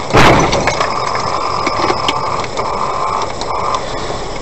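Car collision: a loud impact right at the start, then engine and road noise with a steady high tone that stops and restarts twice.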